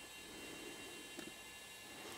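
Quiet room tone: a faint steady hiss with a few thin high tones, and a faint tick about a second in.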